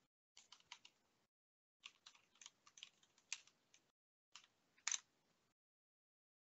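Faint typing on a computer keyboard: three short runs of keystrokes, the last stopping about five and a half seconds in.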